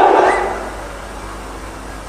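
The tail of a man's loud shout dying away over about half a second in a reverberant hall, leaving a faint, steady low hum.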